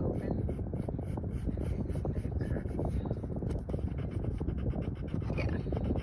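Ebony graphite drawing pencil scratching across sketchbook paper in short, repeated strokes as a curved outline is drawn, over a steady low rumble.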